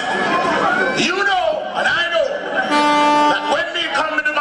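Dancehall deejay chanting rapid patois lyrics into a microphone over a reggae rhythm, heard through a club sound system. A long, steady held note sounds about three seconds in.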